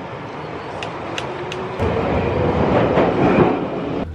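London Underground train running, heard from inside the carriage: a steady rumble and rattle with a few sharp clicks, growing louder about halfway through.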